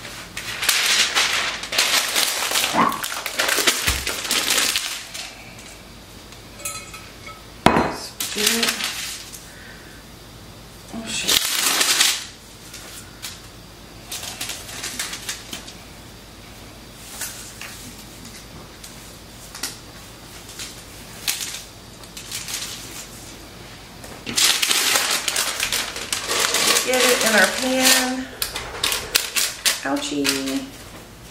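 Parchment paper rustling and crinkling in several bursts. The longest comes near the end, as the sheet holding a sourdough loaf is pressed down into an enamelled cast-iron Dutch oven. A single sharp knock comes about eight seconds in.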